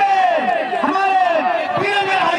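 A man's raised voice announcing continuously through a handheld microphone, with crowd noise behind.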